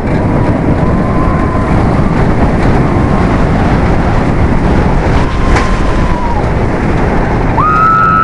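Wind rushing over the microphone and the rumble of a B&M steel hyper coaster train running through the track at speed, with faint held cries from riders. A short, louder high cry comes just before the end.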